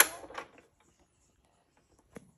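Turntable stylus set down on a spinning vinyl record: a sharp click with a short burst of crackle, a smaller second click a moment later, then faint scattered surface ticks and no music.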